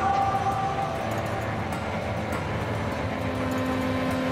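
Film soundtrack: a steady, dense rumbling noise with a few held tones, a new low tone coming in about three seconds in.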